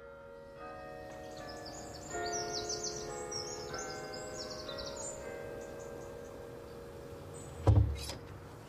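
Birds chirping over soft, sustained musical notes, then a single loud thump near the end.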